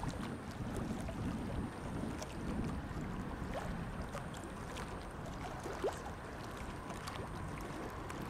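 Wind buffeting the microphone as a steady low rumble, with choppy river water lapping at a concrete embankment.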